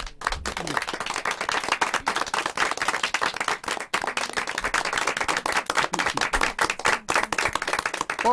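A small group of people applauding, a dense patter of handclaps that holds at an even level.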